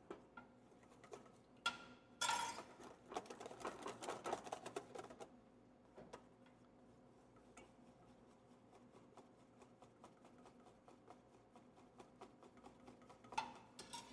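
Wire whisk beating sauce in a stainless steel bowl, a quick run of clicking strokes of the wires against the metal, louder for a few seconds near the start and then faint and steady. The whisking works warm butter into egg yolks to build the emulsion of a hollandaise-type sauce.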